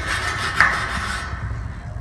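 Wire brush scrubbing the louvered metal side panel of an evaporative cooler, scraping off water-stain scale and slime: a rough scratchy rasping that stops a little past halfway through. A low rumble runs underneath.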